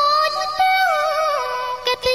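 A Khmer pop ballad with a female lead voice singing an ornamented line. The line wavers and steps down in pitch about a second in, over light high backing with the bass dropped out.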